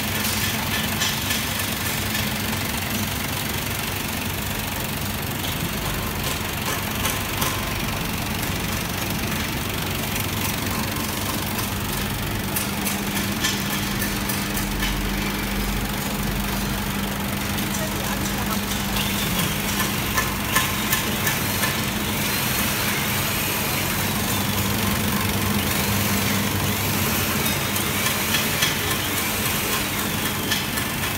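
Vegetable bowl cutter running steadily, its motor humming while the blades chop green vegetables in the spinning stainless-steel bowl, with scattered small ticks.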